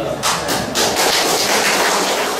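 A group of people applauding, the clapping starting about a quarter second in.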